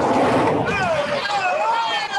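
A vehicle passing close by, its noise swelling to a peak and then easing off, with voices starting up over it about half a second in.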